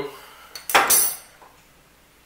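Metal screw lid being twisted on a glass pickle jar, with one short, loud scraping burst about half a second in, alongside a laugh.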